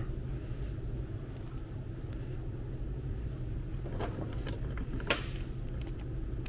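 Steady low mechanical hum of running machinery, with a few small clicks and one sharper click about five seconds in as a plastic spray wand and its hose are handled.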